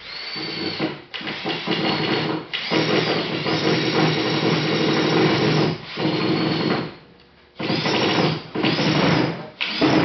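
Power drill running in repeated trigger bursts, some under a second and one about three seconds long, with a steady high whine over a buzzing motor.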